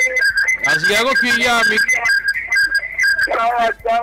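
A run of short whistle-like notes repeated at one high pitch for about three seconds, giving way to a voice near the end.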